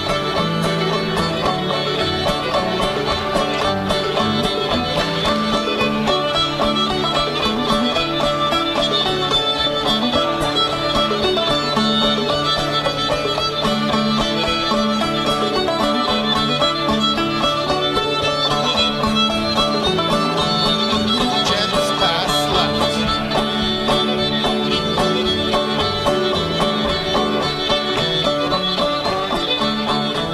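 Live contra dance string band playing a fiddle tune, fiddle leading over banjo and guitar, with an even dance rhythm.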